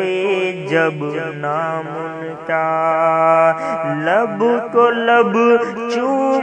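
A male voice singing a naat, an Urdu devotional song, in long held and gliding notes with no clear words, over a steady low drone; the melody rises about four seconds in.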